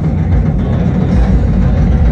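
Drum kit played live by a surf-rock band, a fast rolling beat heavy on the low drums, opening the next song.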